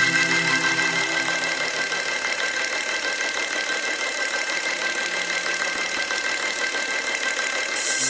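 Electronic music breakdown: a dense, buzzing texture with a fast, even pulse, engine-like, after the bass and chords drop out about a second in. The full beat with bass comes back suddenly at the very end.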